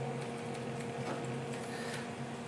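Steady background hum of laboratory equipment, a low even hum with a faint hiss.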